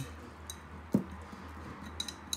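A glass stirring rod clinking lightly against a glass beaker while stirring a water solution, a few faint ticks and one firmer knock about a second in.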